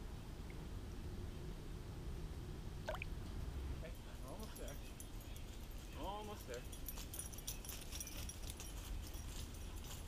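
A low, steady rumble for the first few seconds. Then, from about four seconds in, faint crunching footsteps on the dry pine-needle litter of a woodland trail as a man and a dog walk toward the microphone, with a distant voice heard briefly twice.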